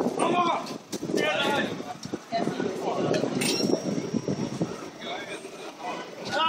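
A man crying out and shouting in short, strained outbursts.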